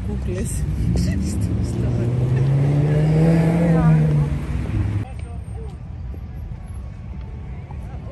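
A motor vehicle's engine passing close by, its note climbing as it accelerates and then holding. It is cut off abruptly about five seconds in, and quieter outdoor noise follows.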